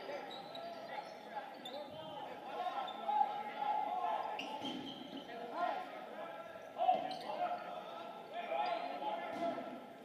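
Dodgeballs bouncing and slapping on a hardwood gym floor now and then, the sharpest knock just before seven seconds in, under the steady chatter of many people in an echoing gymnasium.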